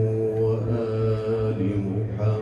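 A man's voice chanting in long, drawn-out notes, the pitch moving slowly from one held note to the next.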